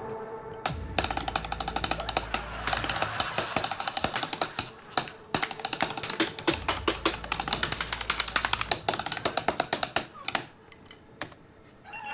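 Fast, rhythmic typing on a computer keyboard: quick keystrokes, many a second, with background music under them. There is a brief pause around the middle, and the typing thins out and stops near the end.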